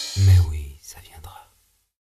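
A short, low voice sound just after the music stops, fading within about half a second, followed by faint whispering and breathy noises. Everything cuts to silence about one and a half seconds in.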